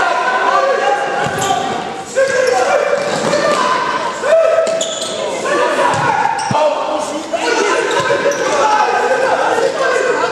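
Live sound of an indoor futsal match: players shouting and calling to each other, with thuds of the ball being kicked and bouncing on the hall floor, all echoing in a large sports hall.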